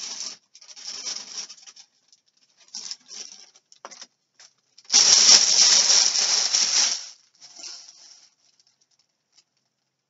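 Rustling and handling noise close to the microphone as things are rummaged through, in short irregular bursts with one louder rustle lasting about two seconds in the middle.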